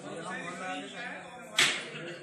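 Indistinct voices in a room, then a single sharp smack about one and a half seconds in, short and the loudest sound here.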